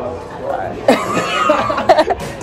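A young woman laughing hard in bursts, growing louder about a second in, with other voices at the table.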